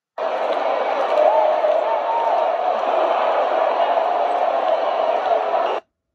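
Stadium crowd noise from a football video, played at full volume through a laptop's built-in Yamaha speakers and sounding thin, with no bass, and a wavering tone riding over the crowd. It starts just after the beginning and cuts off abruptly shortly before the end.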